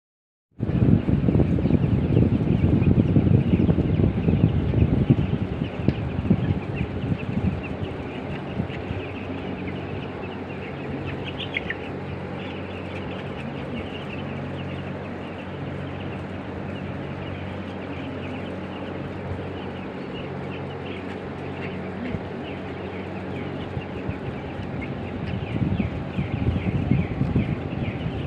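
A large flock of broiler chicks peeping: many short, high calls overlapping without pause, over a steady low hum. A rougher low noise is louder in the first few seconds and again near the end.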